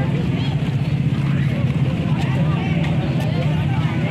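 Outdoor crowd chatter, many overlapping voices of children and adults with no one voice standing out, over a steady low hum.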